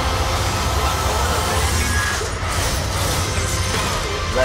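Film trailer soundtrack: dramatic score and sound effects over a heavy low rumble, with a brief drop a little past halfway.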